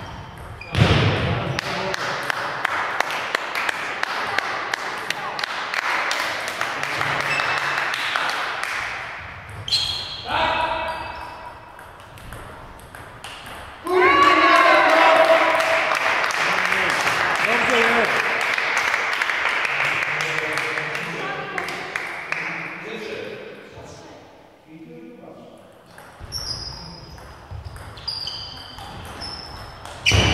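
Table tennis rally: the ball clicks sharply and repeatedly off rubber paddles and the table. About halfway through, a player's loud, long shout of celebration takes over, then fades.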